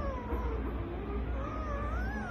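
Newborn puppies squealing while nursing: thin, high, wavering cries, one trailing off about half a second in and another rising near the end, over a low rumble.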